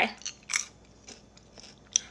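A person biting and chewing caramel-coated popcorn: a few short, crisp crunches, the loudest about half a second in, then quieter chewing.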